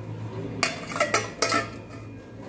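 Stainless steel pots and a steel plate clinking and clanking together on a stovetop as the plate is set over a pot as a lid. There are about five knocks in the second half, each with a brief metallic ring, over a low steady hum.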